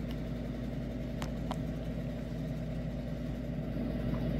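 A cat purring steadily, with two light clicks just over a second in.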